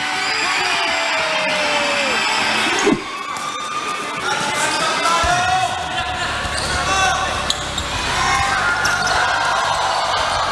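Game sound from a basketball game in an arena: a ball being dribbled on a hardwood court over a steady hubbub of crowd voices and shouts. The sound changes abruptly about three seconds in, at a cut between clips.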